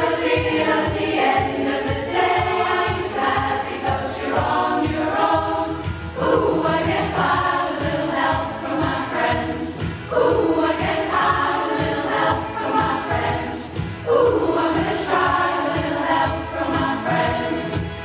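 A large choir, mostly women's voices, singing a pop-rock song in full harmony, in phrases that start afresh about every four seconds.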